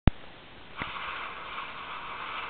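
HTC Thunderbolt's boot sound through the phone's small speaker as the Thunderbolt logo animation comes up: a hissing noise that starts just under a second in and holds steady. A sharp click at the very start.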